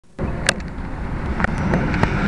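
Steady low rumble of road traffic mixed with wind on the microphone, with a sharp tap about half a second in and a fainter one near one and a half seconds.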